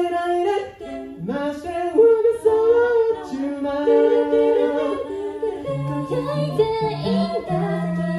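Five-voice a cappella group, four women and one man, singing in close harmony through handheld microphones with no instruments. A low bass part comes in a little under six seconds in beneath the upper voices.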